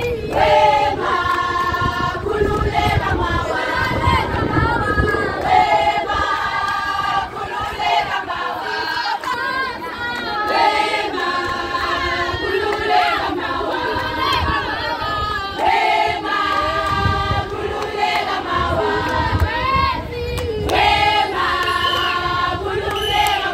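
A group of young women singing a song together loudly, close by, as a group chant with many voices at once.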